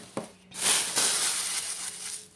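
Crumpled tissue paper rustling as it is handled and lifted away: a dense, papery rustle that starts about half a second in and lasts about a second and a half.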